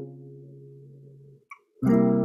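Acoustic guitar chord, a C sharp major 7 voicing, ringing and fading until it cuts out abruptly about a second and a half in. Near the end a new chord is struck loudly.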